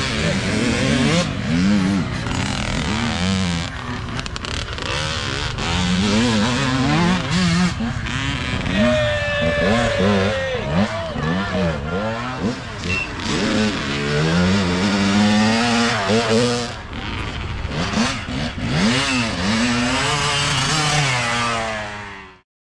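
Several youth dirt bike engines revving and passing one after another, their pitch rising and falling again and again, with voices mixed in.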